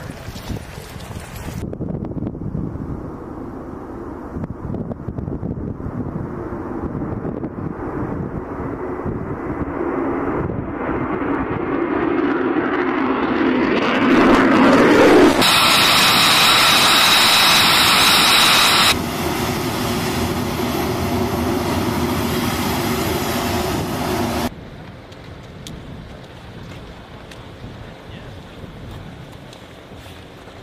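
F-35 fighter jet engine noise that swells over the first half and then holds loud and steady with a high whine. Hard cuts between shots change it abruptly several times, and it drops to a much quieter background for the last few seconds.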